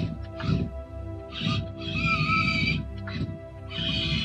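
Short, irregular bursts of whirring from a LEGO Technic mecanum-wheel robot's motors and gear train as it drives, the longest burst about halfway through, over steady background music.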